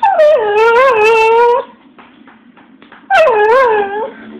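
A dog whining in long, wavering, howl-like calls as a 'speak' trick: two calls, each starting high and dropping in pitch. The first lasts about a second and a half, and the second starts about three seconds in.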